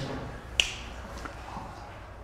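A single sharp click about half a second in, then faint room noise.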